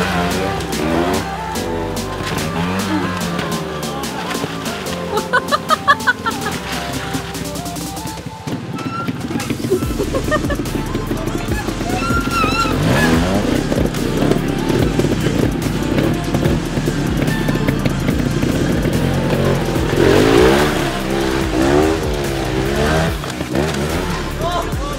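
Trials motorcycle engines revving in short rising and falling bursts as the bikes climb steep muddy banks, over background music with steady held bass notes.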